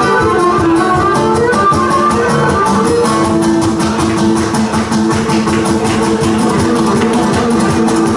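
Cretan lyra playing a bowed melody over a strummed plucked-string accompaniment, played live.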